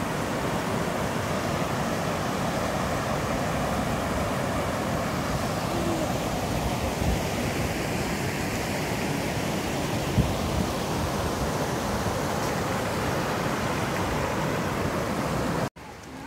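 Steady rush of a small waterfall, water spilling over rock ledges into a shallow pool. There is a brief knock about ten seconds in, and the sound cuts off abruptly just before the end.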